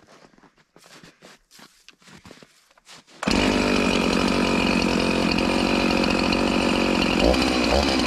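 Husqvarna 353 two-stroke chainsaw: after a few seconds of faint shuffling and handling, it is suddenly running loud and steady about three seconds in, with the engine note changing near the end. Its carburettor's low and high mixture screws have just been turned past their cut-off limiter caps, and this is the test run.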